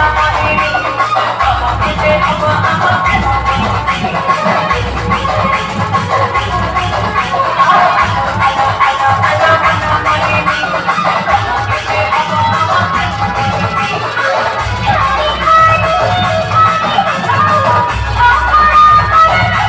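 Loud electronic dance music played through a DJ sound system, with heavy deep bass notes that change every second or two under a melodic line.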